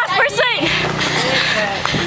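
Excited voices of a group of teenagers, chattering over steady street noise.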